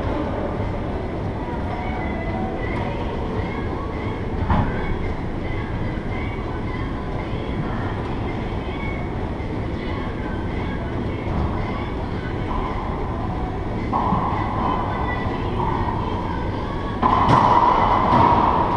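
Steady low rumble of background noise in an enclosed racquetball court, with one sharp knock about four and a half seconds in, like a racquetball striking a wall or the floor. A louder, hissier noise comes in near the end.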